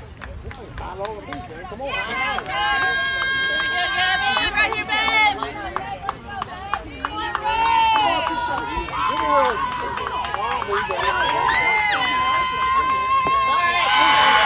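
Several high-pitched girls' voices chanting and calling out together, many notes held long and sung out, overlapping one another, as in a team cheer. It is quieter for the first couple of seconds, then fuller and louder toward the end.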